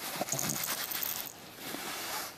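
Light rustling and jingling of a plush baby toy being moved about on a play mat.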